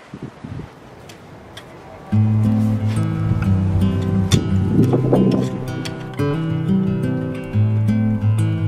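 Faint scratching of a gloved hand breaking up soil, then strummed acoustic guitar music starts suddenly about two seconds in and plays on.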